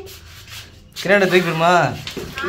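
A person's voice making one drawn-out, wavering call about a second in, after a quieter second of faint scraping.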